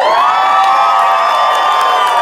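Several voices whooping together in one long, high, held cheer.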